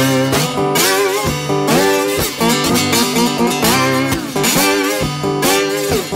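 Acoustic wooden lap steel guitar played with a slide bar in a blues instrumental passage: picked notes with pitches gliding up and down between them.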